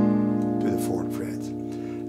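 1986 Greven acoustic guitar ringing out a fingerpicked G-sharp 7 chord, an E7 shape moved up the neck, that slowly fades, with a couple of soft notes picked under it partway through.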